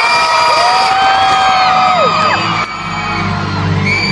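Large concert crowd screaming and whooping, many shrill cries overlapping, with a low steady musical drone swelling underneath near the end.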